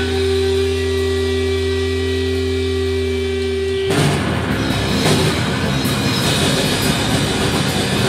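Live heavy rock band: distorted electric guitars hold one steady droning chord for about four seconds, then the drums and full band come in, loud and dense.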